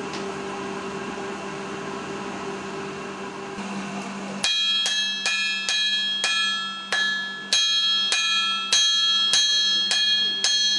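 A steady low hum, then from about four and a half seconds in, a blacksmith's hammer striking hot iron on an anvil, about two to three blows a second, each blow ringing with a metallic tone.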